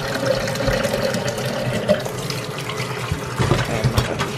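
Kitchen tap running into a plastic blender jar in a stainless-steel sink, a steady splashing, with a few short knocks about three and a half seconds in.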